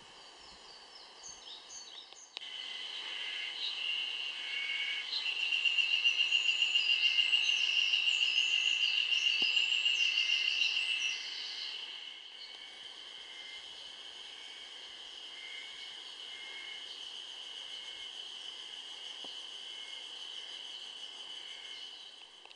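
Mountain forest ambience: a steady high-pitched insect buzz with birds singing over it. It is loudest, with a fast pulsing trill, from a couple of seconds in until about eleven seconds, then settles to a quieter steady buzz.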